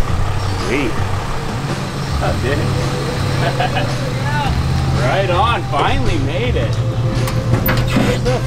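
A vehicle engine idling with a steady low hum, with people talking indistinctly over it.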